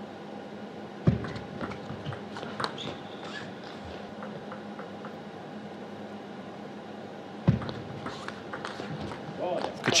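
Two table tennis rallies: each opens with a sharp thud, about a second in and again about seven and a half seconds in, followed by a run of light clicks of the ball off rackets and table. A steady arena hum lies under both.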